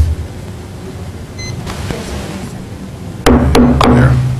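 A meeting-room microphone feed switching on with a pop, then steady room noise and a low hum. About three seconds in come three sharp knocks in quick succession, like a microphone being bumped or tapped.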